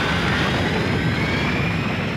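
Sound effect of a space battleship's engines: a loud, steady rumble with a whine that rises slowly in pitch.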